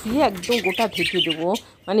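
Pet budgerigars chirping and squawking in a wire cage, under a woman's talking, which breaks off briefly near the end.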